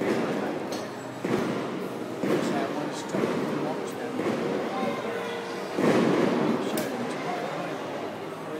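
Fireworks bursting outside, heard muffled through a large window as a string of thuds roughly a second apart, the loudest about six seconds in, over indistinct chatter of onlookers.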